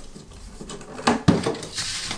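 Handling noise from a folded plastic fold-in-half folding table being turned and gripped: low rubbing with a few light knocks, a sharp click a little over a second in, and a brief scrape near the end.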